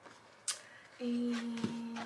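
A sharp click, then a woman humming one steady note for about a second, with a small tap partway through.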